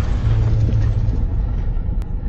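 Deep, steady rumble of a cinematic intro sound effect, with a hiss fading away over its second half, like the tail of a boom.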